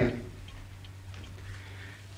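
A clock ticking faintly and regularly over a low steady hum, just after a woman's voice ends on 'thank you'.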